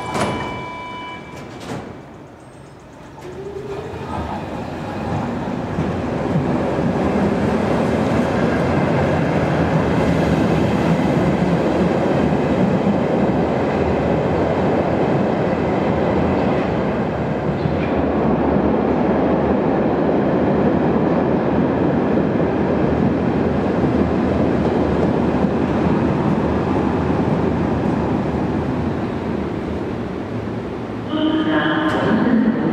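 Berlin U-Bahn class D ('Dora') subway train running through an underground station. Its rumble of wheels on rail and motors builds over a few seconds, then stays loud and steady most of the way through.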